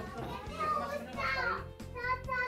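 Voices that sound like children's, over background music.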